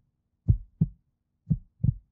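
Heartbeat sound effect: two double thumps, deep and short, about a second apart, played as a suspense cue during the countdown before the button press.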